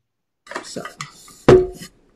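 A metal clink as aluminum canisters are handled: one sharp knock about one and a half seconds in, ringing briefly.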